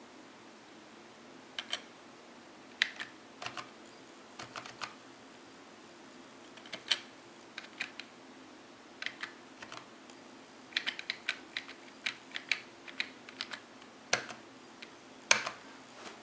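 Computer keyboard keys pressed one at a time and in short runs, sharp separate clicks, with a quicker flurry past the middle, over a faint steady low hum.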